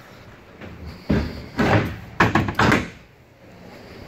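A door in a Vauxhall Movano horsebox conversion being unlatched and swung open: a run of loud clunks and rattles between about one and three seconds in.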